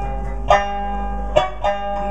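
Mauritanian griot music on plucked string instruments: ringing sustained notes, with sharp plucked accents about half a second in and again near the end.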